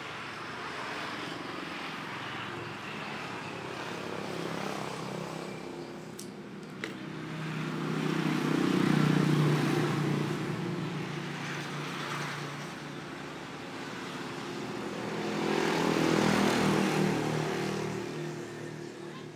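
Electric sewing machine running, its motor humming and stitching, speeding up and getting louder twice, with a single sharp click about a third of the way in.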